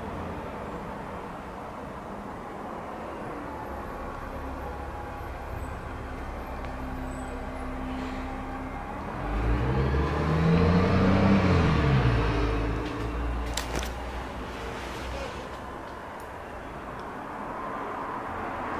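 A motor vehicle drives past over a steady low traffic rumble. Its engine note swells from about nine seconds in, rising and then falling in pitch, and fades out over about four seconds.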